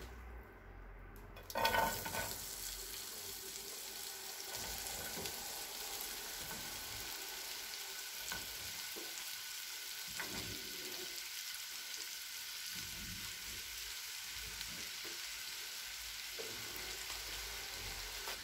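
Sliced onions and bell peppers sizzling in hot oil in a frying pan, stirred with a wooden spatula. The sizzle starts with a loud burst about two seconds in, then settles to a steady hiss.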